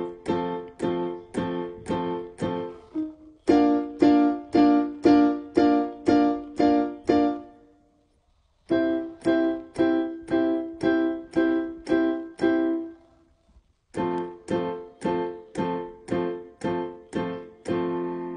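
Electronic keyboard playing full major chords with both hands, each chord struck repeatedly a little under three times a second. It runs through the progression F major, A-sharp (B-flat) major, C major and back to F major, with a short pause between chord groups, and the last chord is left ringing.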